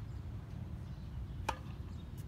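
A tennis ball struck once by a racket about one and a half seconds in, a single sharp pock with a brief ring, over a steady low rumble.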